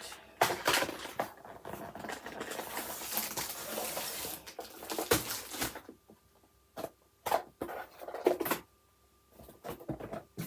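Plastic and paper packaging rustling and crinkling as a diamond painting kit is unpacked. A continuous rustle for about the first six seconds, then a few separate short rustles and knocks.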